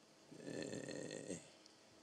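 A faint, brief breathy sound from a person's throat or nose, lasting about a second.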